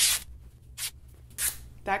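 Sheer woven curtain fabric being ripped by hand along the grain, the tear ending in a loud rip just at the start, then two brief rustles of the cloth.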